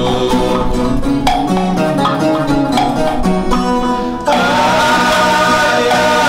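Viola caipira and guitar playing a plucked instrumental passage of a Brazilian caipira song, then several male voices come in singing together a little after four seconds in, and the music gets louder.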